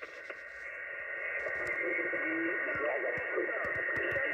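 Shortwave transceiver's loudspeaker on receive on the 40-metre band: a hiss of band noise that swells over the first second, with several steady whistles and a weak, fading voice from a distant station.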